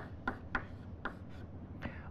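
Chalk writing on a blackboard: a few short, quick taps and strokes of the chalk, with a quieter stretch in the middle and another stroke near the end.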